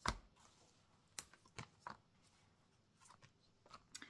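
Near silence broken by a sharp click at the start, then a few faint clicks and light rustles of oracle cards being handled as the first card is drawn and laid down.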